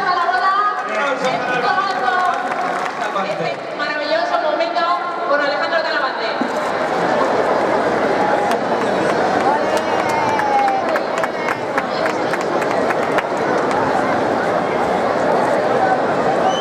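A crowd of children chattering and calling out at once, many high voices overlapping. From about six seconds in, scattered sharp clicks or claps sound through the chatter.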